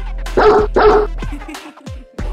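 A dog barks twice in quick succession, loud over upbeat background music. Near the end the music drops out briefly with a falling sweep.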